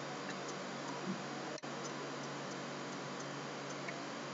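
Steady hiss of room tone with a faint low hum and a few faint scattered ticks; the noise drops out briefly about one and a half seconds in.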